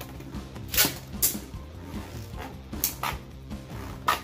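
Two Beyblade Burst spinning tops running in a plastic stadium, clashing with about four sharp clacks, over background music.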